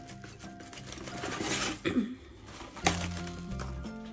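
Background music with steady low notes, over the rustle of plastic cling film being pulled from its box and torn off, loudest about a second and a half in, with a sharp sound near the three-second mark.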